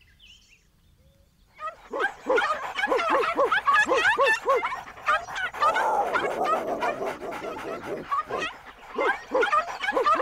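Cartoon dog barking in a rapid run of short yaps, starting about a second and a half in, with a rougher, noisier stretch in the middle before the yapping picks up again.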